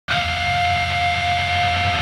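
Electric guitar amplifier feedback: one steady high-pitched tone held over a low amplifier hum.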